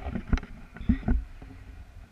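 Wind buffeting a camera microphone in paragliding flight: irregular low rumbling gusts with a few sharp knocks, the loudest at the very start.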